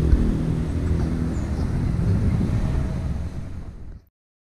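An engine running steadily at idle, a low even rumble, with wind on the microphone; it fades in the last second.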